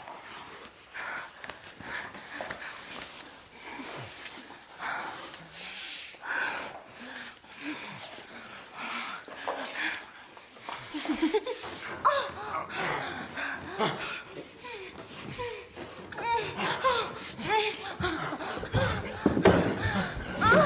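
A man and a woman breathing heavily and kissing. From about halfway through come frequent short gasps and moans, growing louder toward the end.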